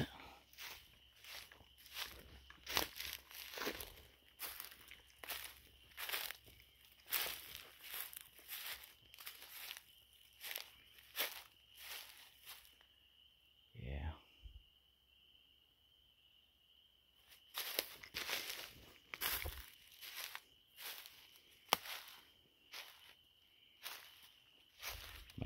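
Footsteps pushing through forest undergrowth, brush and leaf litter crunching and swishing with each stride at a walking pace. The steps stop for a few seconds near the middle, then start again.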